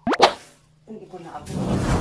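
A short, sharp rising 'plop' like a cartoon sound effect at the very start, the loudest sound. About a second later comes a longer, rough swish that grows louder toward the end, fitting a broom brushing across glazed wall tiles.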